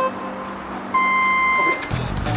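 Electronic start signal for a match: a short beep right at the start, then a longer beep an octave higher about a second in, held for nearly a second.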